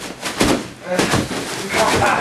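Two sharp thuds about half a second apart: wrestlers' bodies and feet hitting the ring during a collar-and-elbow tie-up, with a voice near the end.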